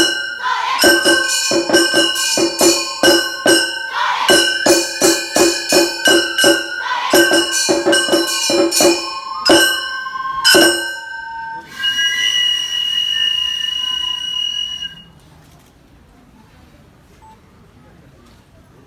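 Gion-bayashi festival music: small hand-held brass gongs (kane) struck in a quick ringing rhythm, about three to four strokes a second. The playing ends with a held high note about twelve seconds in that cuts off about three seconds later.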